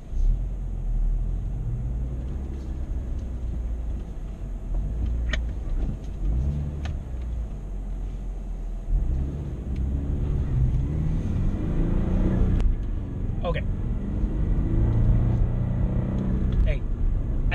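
Car engine and road rumble heard from inside the cabin, idling low at first. About nine seconds in the engine note climbs as the car pulls away and accelerates, rising again near the end.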